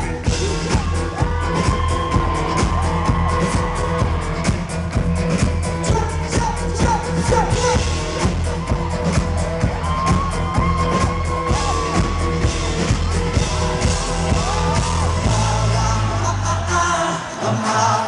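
Live pop band playing an up-tempo number with drums and bass, with singing over it. The bass and drums drop out about a second before the end.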